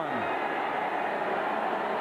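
Stadium crowd cheering steadily during an interception return, heard through an old television broadcast's audio.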